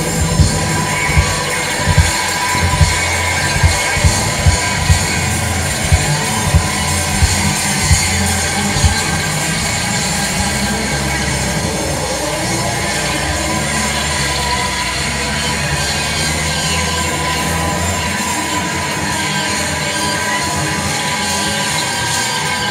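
Live rock band playing loud through a PA: hard drum hits about every 0.8 seconds for the first nine seconds, then a sustained wash of distorted guitar with a steady high tone held over it, and the bass dropping away in the last several seconds.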